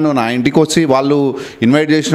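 Speech only: a man talking in Telugu, in close microphone pickup.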